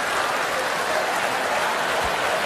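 Theatre audience applauding, a steady even patter of many hands clapping in response to a joke.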